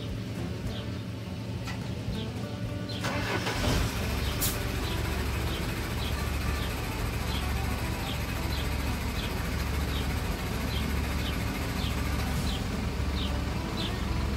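A small diesel tipper truck's engine starting about three seconds in, then idling steadily. A sharp click comes shortly after it catches.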